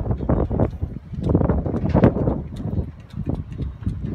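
Wind buffeting the microphone in a rough low rumble, with scattered short clicks and knocks over it; it grows louder about a second in and eases off about a second later.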